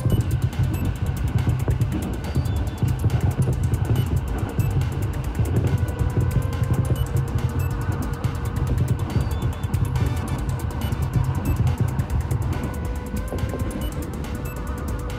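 Background music over the steady running rumble of a train, heard from inside the carriage.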